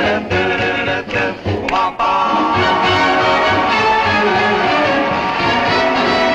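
1950s rock and roll music from a band with horns, with the group singing at first. From about two seconds in a long chord is held over a repeating bass line.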